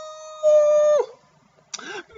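A man's voice holds a long, high-pitched drawn-out exclamation, an 'oooh' of reaction, on one steady note that stops abruptly about a second in. A brief vocal sound follows near the end.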